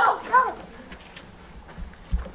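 A brief high-pitched voice calling out at the very start, then a quiet open-air background with a few faint light taps.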